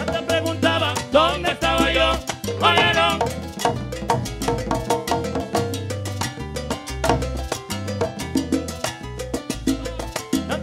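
A live salsa band playing, with a steady bass pattern and percussion throughout. A melody line with vibrato stands out over the band in the first three seconds.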